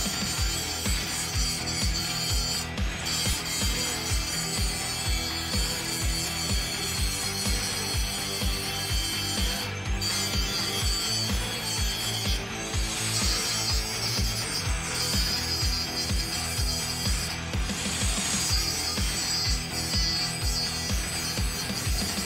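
Background music with a steady beat, over an angle grinder grinding the welded corner of a steel door frame.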